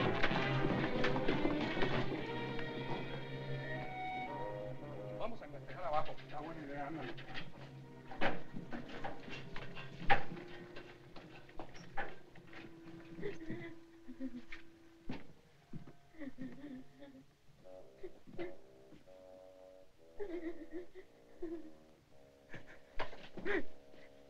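Film score music dying away over the first few seconds. A quiet stretch follows, with isolated sharp knocks every second or two and faint snatches of muffled voices or tones.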